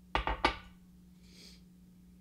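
Three quick, sharp knocks within about a third of a second, each with a short ringing tail, followed by a brief soft hiss.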